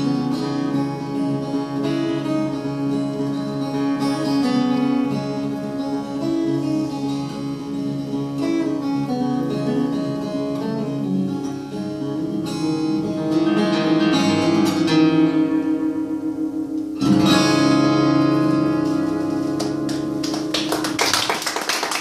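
Solo acoustic guitar playing a fingerpicked instrumental passage, then a loud strummed chord about three-quarters of the way through that is left to ring out.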